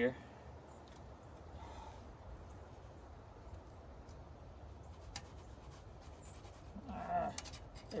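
Quiet creekside ambience with a steady low rumble, and a few faint clicks of a steel Conibear body-grip beaver trap being handled, about five seconds in and just before the end.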